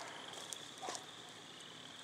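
Quiet pause with a faint, steady high-pitched trill, typical of a cricket or other insect, plus a small click about half a second in and a brief faint sound about a second in.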